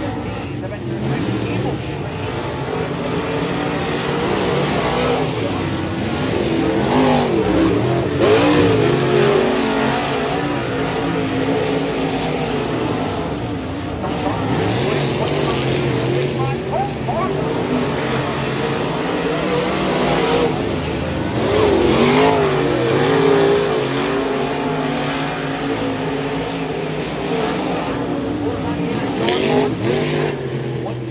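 Dirt late model race car engine at racing speed on a qualifying lap, its pitch rising and falling as the car goes down the straights and backs off into the turns.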